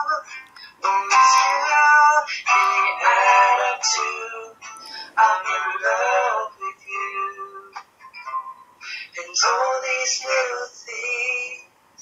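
A man singing to his own acoustic guitar, heard through laptop speakers, so the sound is thin with hardly any bass.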